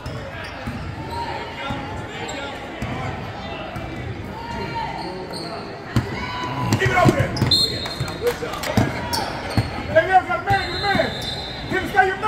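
A basketball being dribbled on a hardwood gym floor during play, with shouts from players and spectators in an echoing gym. Brief high squeals, like sneakers on the floor, come through twice in the second half.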